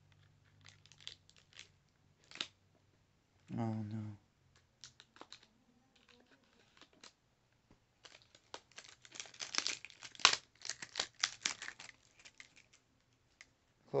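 Packaging crinkling and crackling as it is handled during an unboxing: scattered faint clicks at first, then a dense run of sharp crackles in the second half.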